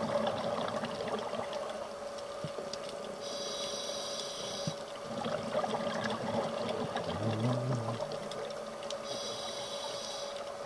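Underwater breathing through a scuba regulator: a hissing inhalation about three seconds in and again near the end, with a crackle of exhaled bubbles between them. A steady hum runs underneath.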